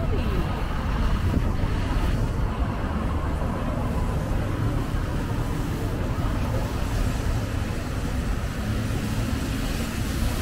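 City street traffic: a steady low rumble of vehicles, with faint voices of passers-by briefly near the start.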